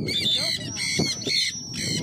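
Birds calling nearby in a rapid run of short, high, squeaky chirps and squawks with quick pitch bends, over a low outdoor rumble.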